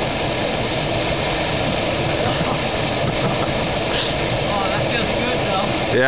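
Steady rush of a small waterfall pouring into a rock pool, with a faint voice about four and a half seconds in.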